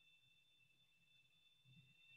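Near silence: faint steady electronic hum and tone of a recording line.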